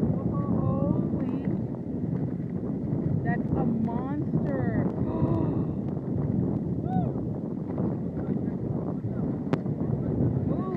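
Wind rumbling steadily on a phone microphone at the shoreline, with small waves washing onto the sand and indistinct voices in the background.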